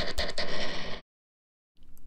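A button-pushing sound effect: a rapid run of clicks over a buzzing tone, as a button is pressed many times in quick succession. It cuts off suddenly about a second in.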